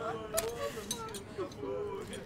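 A person's voice in low, drawn-out tones, held on one note at first, with a sharp click about a third of a second in.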